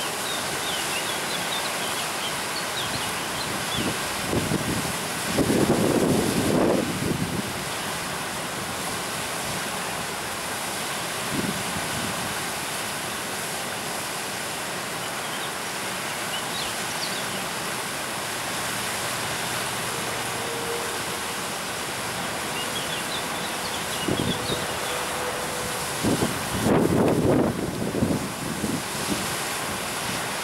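River whitewater rushing over a weir or rapid, a steady hiss. Two stretches of louder low rumble, about five and twenty-six seconds in, come from wind on the microphone.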